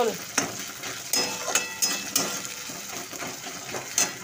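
Onions and ginger-garlic paste sizzling in hot oil in a metal kadai, stirred with a metal spatula. The spatula scrapes and clicks against the pan several times over a steady frying hiss.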